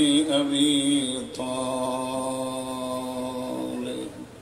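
A man's voice chanting religious recitation in long, drawn-out held notes. It shifts to a new note about a second in and holds it steadily until just before the end.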